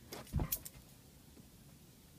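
A pit bull getting down: in the first moment there is a soft thump and a few quick clicks from its metal-studded collar.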